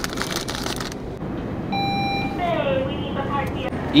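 A plastic snack bag crinkling as it is handled for about a second. About halfway through comes a short electronic beep, followed by someone talking in the background.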